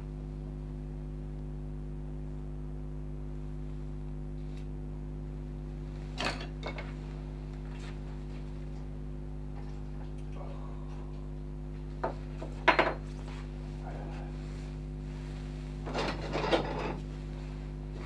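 Hand tools being picked up and set down on a wooden workbench: a few scattered knocks and clinks, the loudest a short metallic clink with a brief ring about thirteen seconds in, and a short clatter near the end, over a steady low hum.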